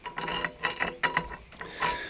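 Steel drill bit clinking and scraping against a steel plow beam and loose metal shavings: a run of small, irregular clicks and rubs.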